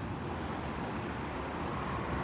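Steady background noise, a low rumble with a hiss over it and no distinct events.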